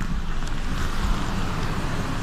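Steady noise of storm wind and rough surf breaking on the shore, with a low rumble underneath.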